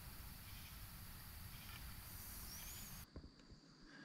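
Faint steady hiss of woodland background, with one faint high gliding whistle about two and a half seconds in. The hiss drops away abruptly about three seconds in.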